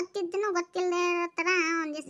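A high-pitched cartoon character's voice singing a short phrase: a few quick syllables, then two long held notes, the last one wavering.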